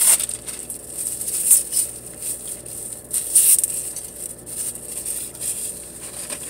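Packaging rustling and crinkling as it is handled, in uneven bursts that are loudest about one and a half and three and a half seconds in.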